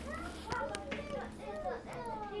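Several young children talking quietly at once, a low overlapping chatter, with two light clicks in the first second.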